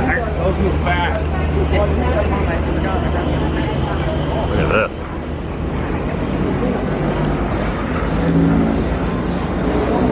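Steady low mechanical hum of a detachable gondola lift's terminal machinery as a set of three cabins leaves the station. The hum cuts off about five seconds in, leaving a lower background. Voices and a laugh can be heard over it.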